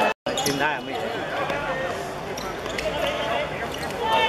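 Players and spectators calling out on an outdoor football court, with a few thuds of the ball being kicked and bouncing on the hard surface. The sound cuts out briefly just after the start.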